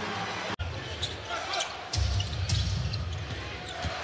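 Arena sound from a basketball game: a basketball bouncing on the hardwood court over the crowd's low hum. The sound drops out for an instant about half a second in.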